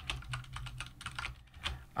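Computer keyboard keys clicking in a quick run of keystrokes as code is typed, over a faint steady low hum.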